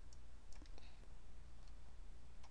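A few faint computer mouse clicks, scattered and irregular, over a low steady hum.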